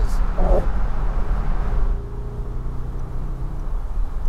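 Mercedes-Benz S-Class Cabriolet driving with the top down: steady road and wind noise over a deep rumble. About two seconds in the noise eases and a steady low engine hum comes through.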